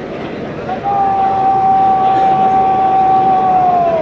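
A parade commander's long drawn-out shouted word of command: one high note, begun about a second in, held for about three seconds and falling in pitch as it ends, over steady background noise.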